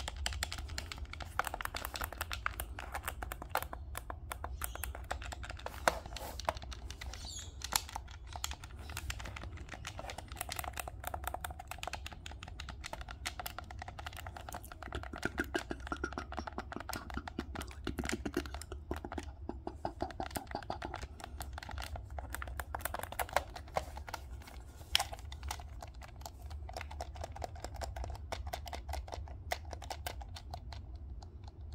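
Buttons of a Nintendo Switch Pro Controller pressed over and over in quick succession: a dense, irregular run of small plastic clicks.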